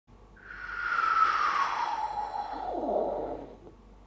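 Airplane flyby sound effect: a whoosh with a falling tone that swells over the first second and fades away after about three seconds.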